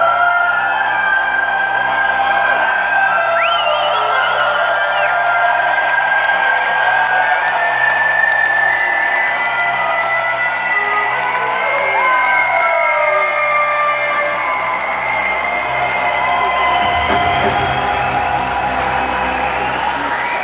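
Arena crowd cheering, clapping and whistling over recorded intro music, with one long wavering whistle a few seconds in.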